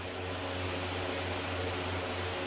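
Steady low hum with a faint hiss: room background noise from a running machine.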